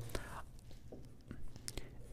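Faint, brief strokes of a felt-tip marker on paper as a small cross is written.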